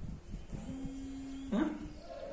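An animal's repeated whining calls, each held at one steady pitch for under a second, with a sharper cry near the end.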